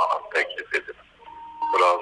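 A man talking over a telephone line, with a short steady electronic beep about a second and a half in.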